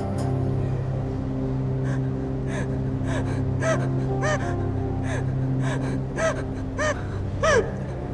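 A sustained, ominous music drone under a woman's short, frightened gasps and whimpers, which begin about two seconds in and come faster and louder toward the end.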